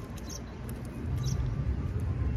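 Close-miked chewing of a meatball sub on flatbread: short wet mouth clicks and smacks over a low rumble, a little louder from about a second in.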